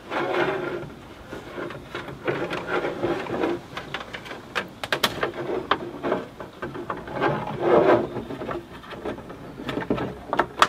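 Plastic centre-console trim and a multi-USB charging unit rubbing and scraping as the unit is worked into the dashboard ashtray recess, with several sharp plastic clicks about five seconds in.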